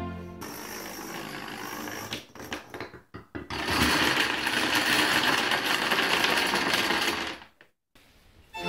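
A short bit of music ends, then plastic dominoes fall and clatter: a quieter rattling run, a few scattered clacks, then a dense, loud cascade lasting about four seconds as a wall of dominoes collapses. It dies away shortly before the end.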